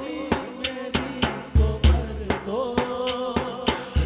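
Devotional Urdu song (a manqabat) with a male voice holding long, wavering notes over a steady drum beat of about three strokes a second, with heavy bass thumps near the middle.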